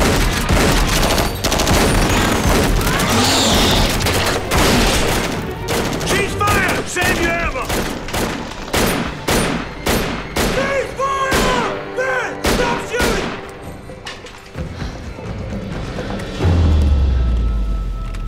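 Heavy gunfire in a film battle mix: a rapid, dense run of shots, shotgun blasts among them, with music underneath. The shots thin out after about thirteen seconds, and a deep low boom comes near the end.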